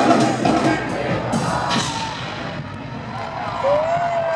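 Live hip-hop concert heard from within the audience: a band of drums, guitar and keyboards plays under amplified rap vocals while the crowd cheers, the music easing off in the middle. A long shout from the crowd rises and holds near the end.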